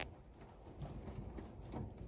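Rabbit biting and chewing a crisp leaf held in a hand, a few faint crunches over a low background rumble.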